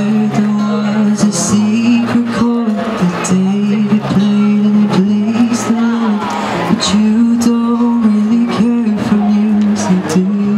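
A man singing with a strummed acoustic guitar, long held vocal notes over steady strumming.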